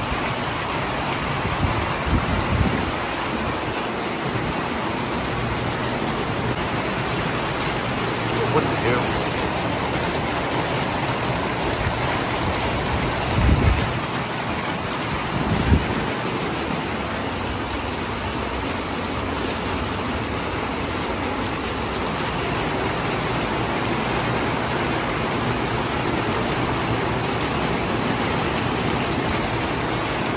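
Heavy rain falling steadily, an even hiss of drops on wet concrete and lawn, with a few brief low thumps about 2 s in and twice between 13 and 16 s.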